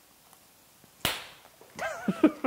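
A single sharp smack about a second in, after a near-silent pause, followed by laughter and voices starting near the end.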